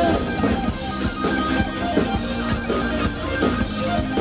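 Rock band playing live with guitar to the fore, without vocals.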